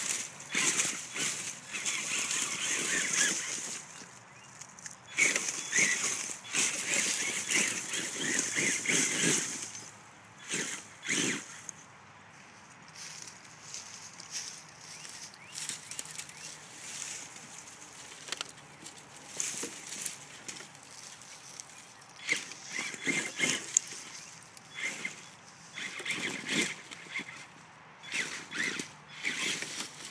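Dry leaves and twigs crackling and crunching in irregular bursts under an RC truck's tyres and footsteps in leaf litter, with a quieter stretch in the middle.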